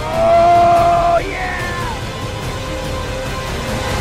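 A man crying out in pain from a tarantula hawk wasp sting: a loud held "ahh", then a higher yell that slides down and fades about two seconds in, over background music with a steady drone.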